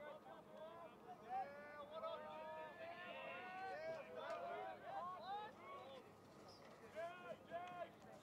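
Faint voices calling out at a distance: players and coaches shouting on a lacrosse field during live play.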